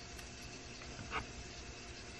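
A small folded square of aluminium foil being pressed between fingers: one short, soft crinkle about a second in, over a steady faint room hiss.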